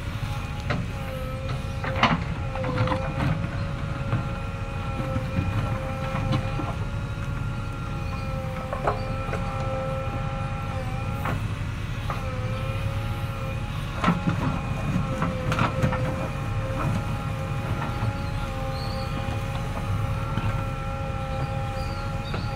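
JCB 3DX backhoe loader at work with its backhoe arm: the diesel engine running steadily with a steady whine over it, and a few sharp knocks, one about two seconds in and several more around fourteen to sixteen seconds in.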